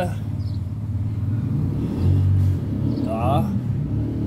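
A low, steady rumble, swelling for a moment about two seconds in, with a brief voice near the end.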